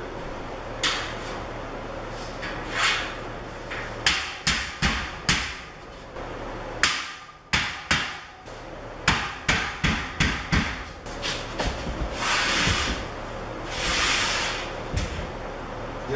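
Rubber mallet knocking steel shelf beams down into the slots of the rack's uprights: a dozen or so sharp knocks in quick runs from about four seconds in to about eleven. Between them are a few longer scraping sounds from the metal parts being handled, two of them near the end.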